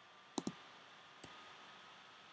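Computer mouse clicks: a quick double click about half a second in, then a single fainter click just past a second.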